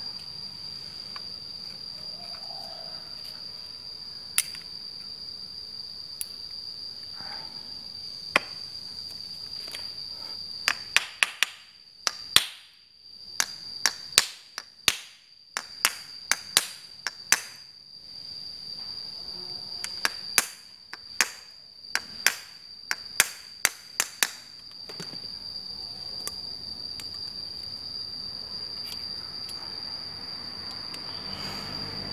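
Rapid series of sharp taps and knocks on the plastic casing of an air conditioner's indoor brushless DC fan motor, struck with a tool to seat the motor back together after its Hall-sensor IC was replaced. The strikes come between about 11 and 24 seconds in, and the stretches on either side are quieter handling. A steady high-pitched whine runs underneath.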